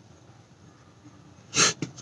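Low room tone, then about one and a half seconds in a short, sharp burst of breath from a man, followed by a small click.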